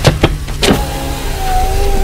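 Knuckles knocking a few times on a car's side window, then the power window motor whining steadily as the glass lowers.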